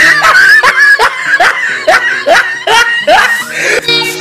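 Recorded laughter in the soundtrack: a rapid run of short 'ha' laughs, each rising in pitch, about three or four a second, over music.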